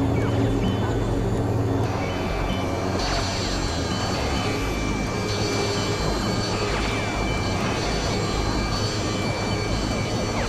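Experimental synthesizer noise-drone music: a dense, steady wash of noise with held high tones and a few sliding pitches. The texture changes about two seconds in and again about a second later.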